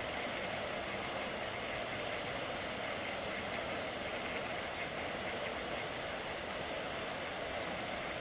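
Steady background noise with a faint, thin high tone running through it and no distinct events.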